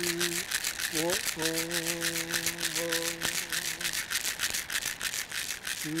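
Hand rattle shaken in a fast, even rhythm while a man's voice sings long held notes. The voice slides up into a new note about a second in and again near the end.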